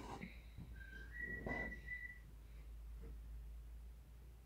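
Faint whistling: a few held notes, the longest lasting about a second, with a soft brushing sound about a second and a half in.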